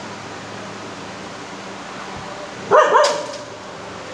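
A dog barks once, a short sharp bark about three seconds in, over a steady background hiss.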